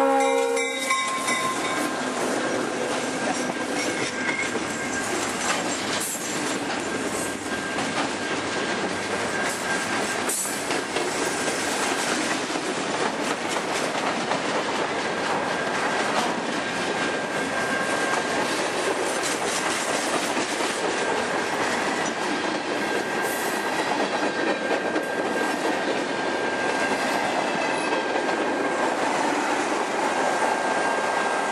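Georgia Central freight train passing close by at speed. The locomotive horn's chord cuts off about a second in, then the locomotives and a long string of loaded hopper cars roll past with a steady rumble and clatter of wheels on the rails.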